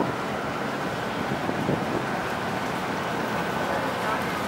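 Steady outdoor background noise, mostly wind on the microphone, with no distinct events.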